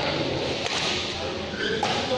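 Badminton racket strokes on a shuttlecock during a fast doubles rally: two sharp cracks, about a second in and again near the end.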